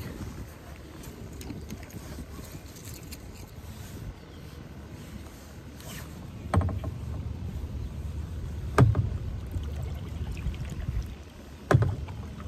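Wind rumbling on the microphone over a small boat on open water, heavier from about halfway through, with two sharp knocks, the second near the end.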